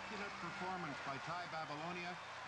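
Speech: a man's voice talking after the music has ended.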